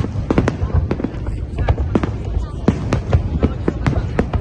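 Aerial fireworks shells bursting in quick, irregular succession, about three sharp cracks a second over a constant low rumble of booms.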